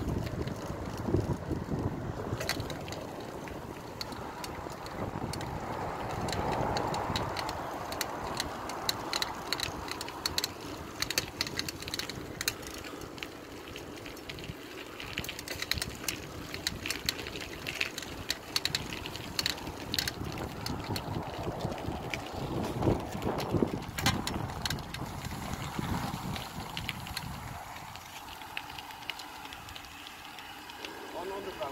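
Bicycle riding along a tarmac path: steady rolling noise from the tyres on asphalt, with frequent small clicks and rattles from the bike.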